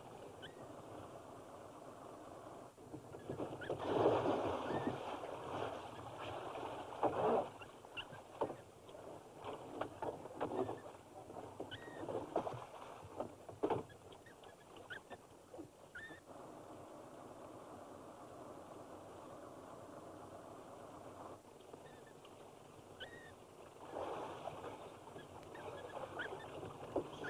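Water splashing and sloshing, with scattered knocks and a few short squeaks, on an old film soundtrack.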